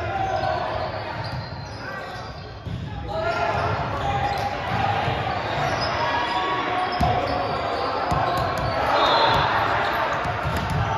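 A volleyball bouncing on a hardwood gym floor, with a sharp smack about seven seconds in, over voices of players and spectators echoing in the gym.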